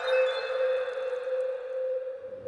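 A single sustained, bell-like tone from the background score, held at one pitch with faint higher overtones and fading out at the very end.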